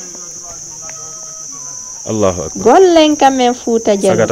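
Steady high-pitched insect drone. About halfway in, a person's voice calls out loudly, rising and then falling in pitch.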